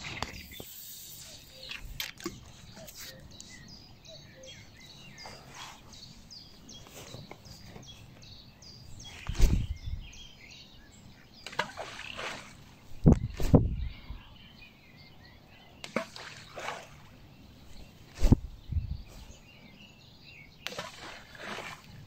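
Groundbait balls thrown by hand into a calm river, a series of sudden throws and splashes a few seconds apart.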